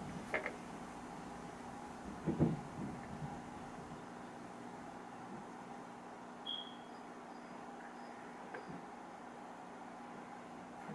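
Faint steady hum, with a few soft knocks about two seconds in and a brief faint high tone past the middle.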